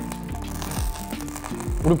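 Fast crackling and popping from the fire-extinguishing capsules of an auto-extinguishing power strip bursting in the heat of a fire inside it. Background music plays alongside.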